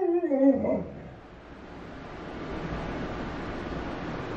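Alaskan malamute giving a short, pitched vocal call that wavers and then falls away, ending about a second in; after that only low room noise.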